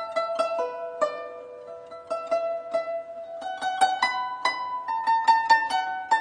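Guzheng being played: a melody of single plucked notes, each ringing and fading away, sparser in the middle and quickening over the last couple of seconds.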